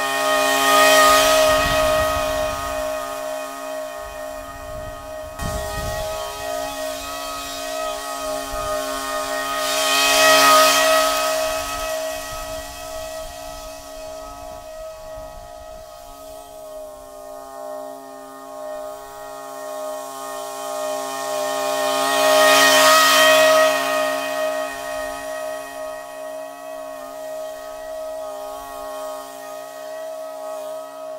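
Commercial lawn mower running at a steady pitch with a constant whine, growing louder and hissier three times, about ten seconds apart, as it passes close by.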